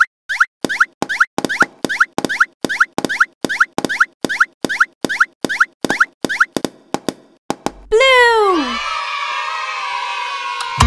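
Cartoon plop sound effects, one quick rising pop after another at about three a second, as animated balls drop into the holes of a toy. Near the end they give way to a single drawn-out call falling in pitch over a shimmering ring.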